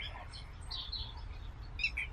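A few faint, short chirps of small birds in the background, over a steady low hum.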